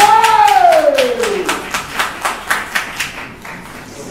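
Audience clapping, about four claps a second, fading out after about three seconds, with one long cry from a voice at the start that falls in pitch.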